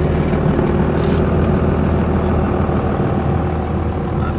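A 1998 Dodge Ram's 12-valve Cummins 5.9-litre inline-six turbodiesel running steadily while the truck is driven, heard from inside the cab along with road noise.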